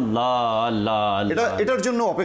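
A man's voice speaking, holding one long drawn-out syllable for about a second before going on in shorter syllables.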